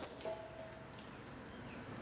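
Quiet, with a few faint clicks and handling sounds from a hand moving a rubber propane hose and a swivelling aluminium bracket.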